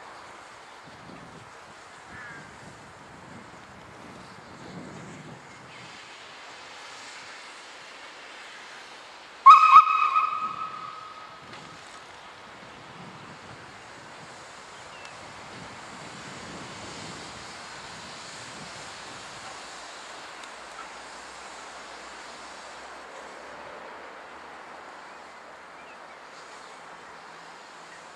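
Whistle of the SNCF 241P 4-8-2 'Mountain' express steam locomotive giving one short, loud blast about ten seconds in. It starts sharply and dies away over a second or two, against a steady background hiss.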